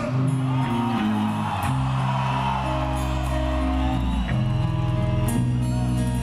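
Hard rock band playing live through a stage PA: electric guitar, bass and drums in an instrumental passage with sustained notes.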